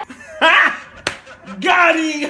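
A man laughing loudly in two whooping outbursts, with a single sharp smack about a second in.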